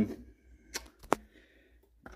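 Two short, sharp clicks about half a second apart, from something small being handled.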